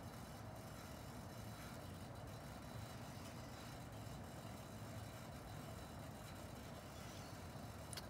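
Faint, steady low hum of room tone, with no distinct handling sounds.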